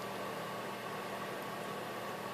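Steady faint hiss with a low, even hum: room tone, with no distinct sound from the rat's lapping.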